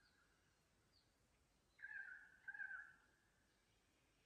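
A single two-part bird call about two seconds in, standing out over near silence and a few faint, high distant bird chirps.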